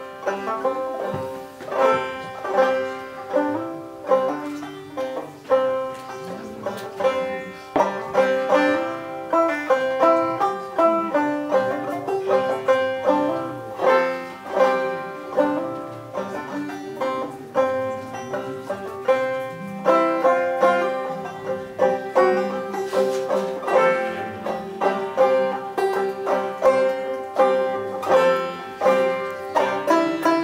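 Banjo played solo, a steady run of picked notes carrying a melody with no singing.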